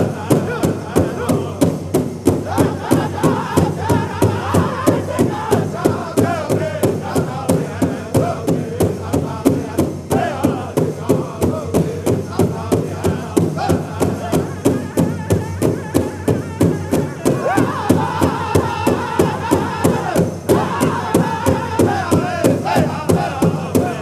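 A powwow drum group singing a contest song for men's traditional dancers: several singers in unison over a big drum struck together in a steady beat, a little over two beats a second. The singing climbs higher about ten seconds in and again a few seconds before the end.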